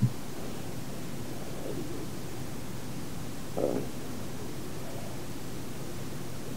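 Steady hiss with a low hum, the background noise of an old lecture recording during a pause in speech. A faint short sound comes about three and a half seconds in.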